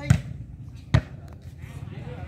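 Two sharp thuds of a volleyball in play, a little under a second apart, over background voices.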